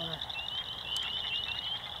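Night chorus of small calling frogs: short rising peeps repeated several times a second over a steady high ringing drone.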